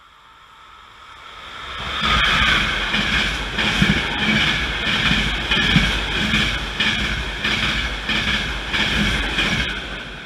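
Passenger train passing through a station at speed: the sound swells over the first two seconds, then the wheels rumble with a quick run of clacks over the rail joints for about eight seconds, falling away near the end as the last coach goes by.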